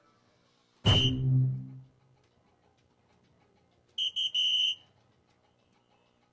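Electronic dartboard sound effects as darts land: a sudden electronic tone with a low hum under it about a second in, fading over about a second, then three quick high beeps at about four seconds.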